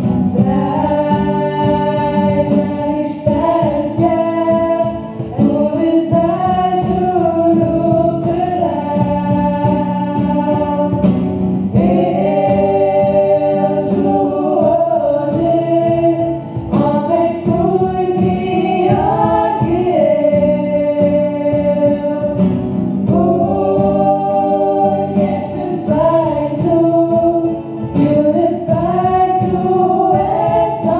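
A live song: several young voices singing together in harmony into microphones, led by girls' voices, over an acoustic guitar and a steady cajón beat.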